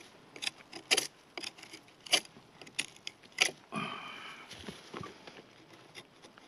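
Stainless-steel fixed-blade knife scraping and shaving bark from a fallen log in a quick run of short, sharp strokes, roughly two or three a second, to flatten a spot on the wood.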